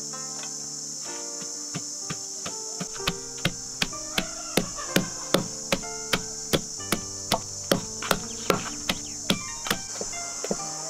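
Wooden pestle pounding shredded food in a wooden log mortar: short dull knocks that start about three seconds in and keep an even beat of about two and a half a second.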